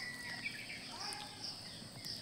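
Quiet rural background: a steady high-pitched insect chirr, with a short faint bird call about a second in.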